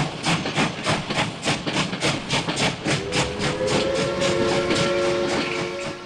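Steam locomotive chuffing steadily, about three exhaust beats a second, with a multi-note steam whistle coming in about halfway through and held.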